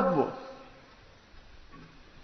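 A man's lecturing voice ends on a drawn-out word that falls in pitch and fades out within about half a second. A quiet pause of faint room tone follows.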